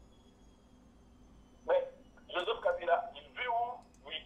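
A short stretch of speech heard over a telephone line, thin and band-limited, starting about a second and a half in after a faint hiss, in a few quick bursts of syllables.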